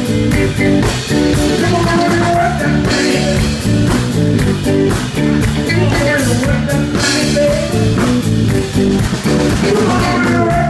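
Live blues band playing: electric guitar over bass guitar and a drum kit keeping a steady beat.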